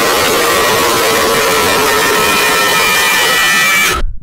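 Loud, heavily distorted jumpscare scream sound effect, harsh static-like noise with faint held tones inside it. It cuts off suddenly at the end.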